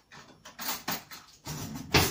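Kitchen utensils handled on a counter while getting ready to cut a beetroot: a few short scrapes and knocks, with a sharp click near the end.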